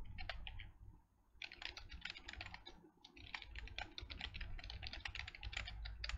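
Typing on a computer keyboard: a few keystrokes, a short pause, then two longer runs of rapid keystrokes with a brief break between them.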